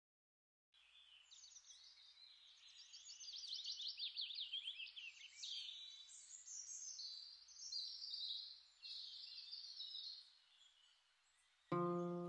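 Songbirds singing: rapid, overlapping high trills and chirps that die away about ten seconds in. Music with held notes starts just before the end.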